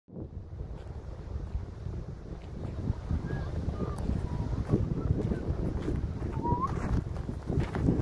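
Wind buffeting the microphone, a steady low rumble, with a few faint short chirps over it.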